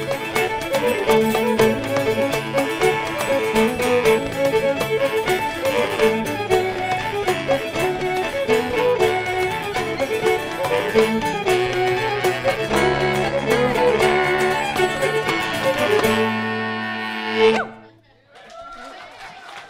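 Folk band playing a fast instrumental tune on two fiddles and clarinet, with guitar and a steady beat behind them. Near the end the tune settles on a long held final chord, swells to a last accent, and stops.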